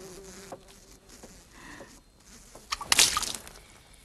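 A fly buzzing, its drone wavering in pitch, with a short loud burst of hissing noise about three seconds in.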